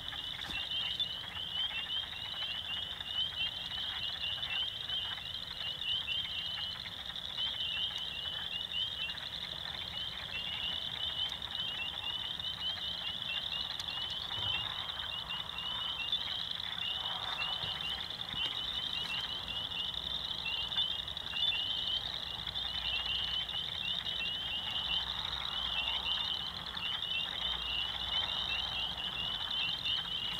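A dense night chorus of frogs: many short, high-pitched rising calls overlap without a break at a steady level.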